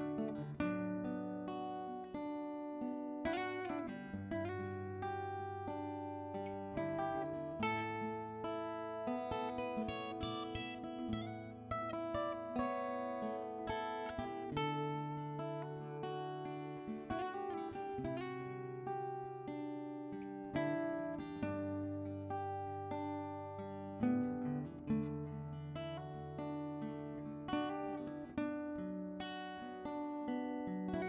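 Background music: an acoustic guitar picking a steady run of notes over held bass notes.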